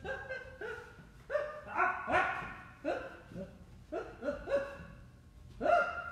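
A man's short, strained yelps and grunts, about two a second, made with the effort of walking on his hands. A low thump comes right at the end.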